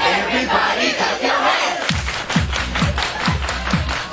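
Dance music with a crowd shouting and cheering over it; the bass drum drops out at first, then a steady thumping beat comes back in about halfway, about two beats a second.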